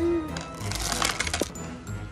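Plastic candy packaging crinkling and clinking for about a second, starting about half a second in, over background music.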